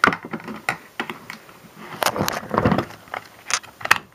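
Hands handling a plastic battery-operated saxophone Santa figure: irregular clicks and knocks.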